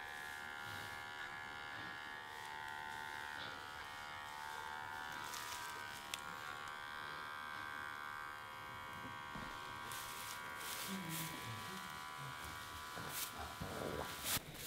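Small handheld electric clippers buzzing steadily as they trim the wool around a sheep's tail and hind leg, the final grooming touches before showing.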